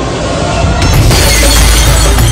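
Film action sound effect: a rising build, then just under a second in a deep boom with glass shattering, over background music.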